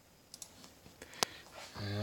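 Computer mouse clicking: a couple of faint ticks, then one sharp click about a second and a quarter in, in a quiet room.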